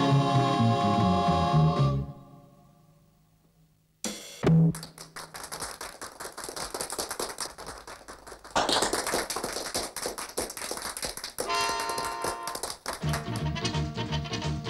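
A band song with guitars and double bass ends on a held chord that dies away to near silence. About four seconds in, an audience starts clapping, and the clapping swells into louder applause with cheering. Lively music starts up again near the end.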